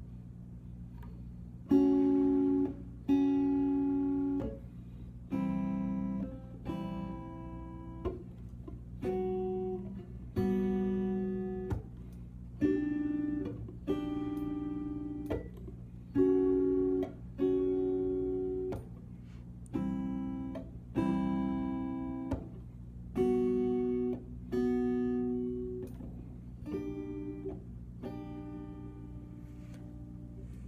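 Squier Stratocaster electric guitar playing a slow progression of plucked four-string chords: D major 7, A minor 7, G major 7, then B flat, each struck about twice and left to ring. A steady low hum runs underneath.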